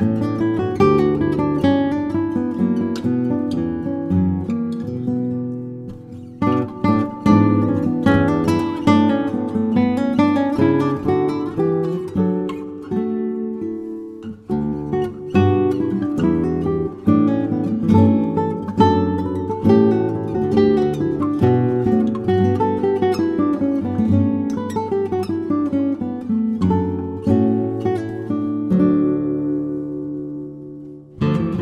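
Background music on acoustic guitar, plucked and strummed, with brief breaks about six and fourteen seconds in.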